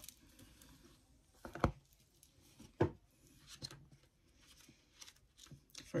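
Handling noises as a book is fetched: a few scattered light knocks and rustles, with two louder knocks about a second and a half and about three seconds in.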